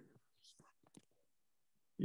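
Near silence in a pause of speech, with a few faint, short breath and mouth sounds in the first second.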